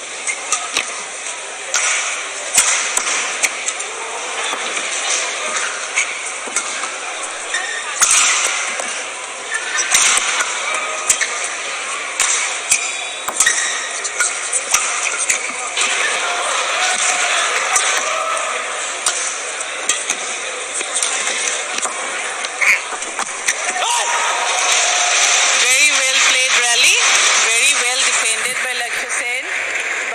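Badminton play in a crowded hall: irregular sharp racket strikes on the shuttlecock over steady crowd voices, which grow louder near the end.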